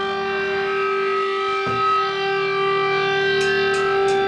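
Electric guitar amp feeding back: one steady, unwavering tone held with its overtones, over a lower amp hum, with a single click about one and a half seconds in.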